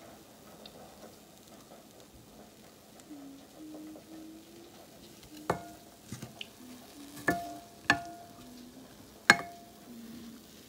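A wooden spatula stirring and lifting cooked green beans in a pan. In the second half it knocks sharply against the pan a handful of times, each knock ringing briefly, and the last is the loudest.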